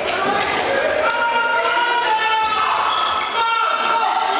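Sounds of an indoor floorball game echoing in a sports hall: sports shoes squeaking on the hall floor, mixed with players' voices calling out.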